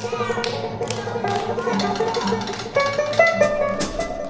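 Live band music: a drum kit played with sticks, with cymbal and drum strikes throughout, over plucked guitar and banjo.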